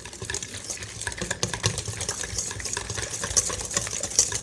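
Wire whisk beating flour into hot water in a stainless steel bowl: rapid, steady clicking and rattling of the wires against the metal and through the thin batter.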